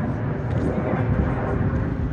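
Steady outdoor background noise: a low, irregular rumble with indistinct voices mixed in.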